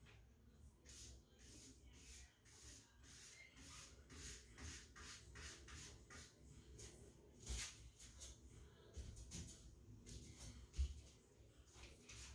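Faint, repeated scratchy swishes of a paintbrush stroking wooden door trim, about one or two strokes a second, with a few soft low thumps in the second half.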